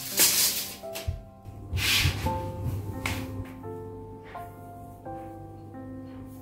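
Soft piano background music, single notes. Over it come short rasping zips from a retractable steel tape measure being drawn and let back in: one just after the start, then about two and three seconds in, with a light knock about a second in.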